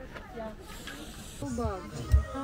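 Faint talking with a soft hiss in the middle, then a louder voice comes in near the end.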